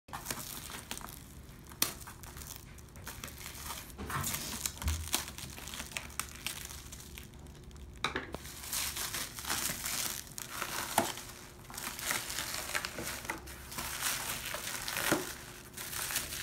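Plastic stretch wrap crinkling and crackling irregularly as it is peeled and pulled off a cardboard-wrapped picture frame, with a few sharp snaps.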